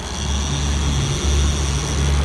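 Twin Mercury outboard motors running steadily with the boat under way: a low even drone with a faint high whine above it, mixed with the rushing of the wake and water along the hull.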